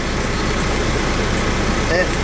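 Semi truck's diesel engine idling steadily, heard from inside the cab as a low, even hum with a fast regular pulse.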